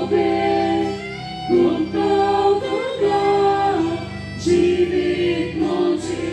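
Church choir singing a hymn in long held notes.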